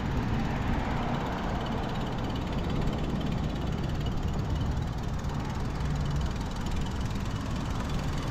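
Steady rumble and hiss of a moving bicycle: tyres rolling over brick pavers, with wind on the microphone.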